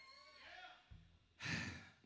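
A short breath or sigh blown into the vocal microphone about one and a half seconds in, just after a faint low thump.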